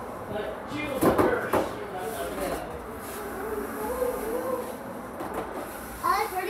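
A few sharp knocks close together about a second in, with children's voices faint in the background.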